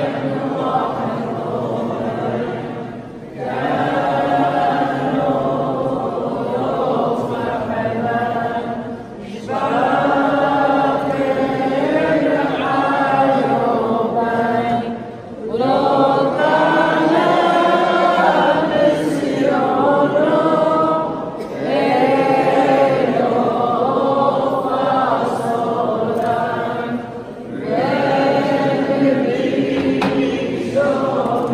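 A group of people singing together without accompaniment, in long phrases broken by short pauses about every six seconds.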